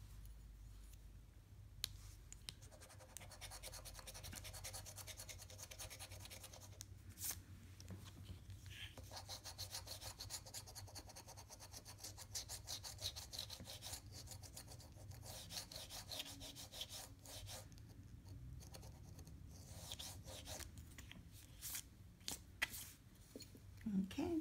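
A metal coin scraping the coating off a scratch-off lottery ticket, faint and quick back-and-forth, in several runs with short pauses between.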